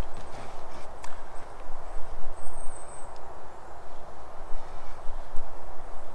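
Footsteps and shuffling on soft forest ground as a person walks off, with a few faint knocks, over a steady outdoor hiss.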